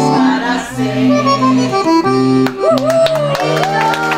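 Scandalli piano accordion playing a tune, with a woman singing along into a microphone. About two and a half seconds in, a long sung note slides slowly downward and hand clapping starts.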